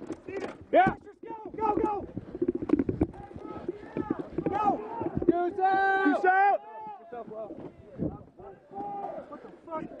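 Several men's voices shouting and calling out over one another, one long call held near the middle. A sharp bang, the loudest sound, comes about a second in, and another about eight seconds in.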